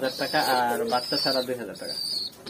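Giribaz pigeons cooing in a wire cage.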